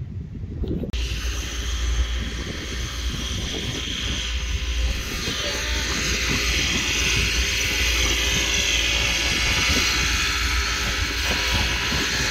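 Wind buffeting the microphone outdoors: a steady low rumble with a hiss on top. It starts abruptly about a second in, and the hiss grows louder about halfway through.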